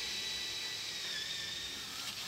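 18-volt cordless drill running steadily, its bit boring a hole into the edge of a wooden door, with a steady high whine that dips slightly about a second in.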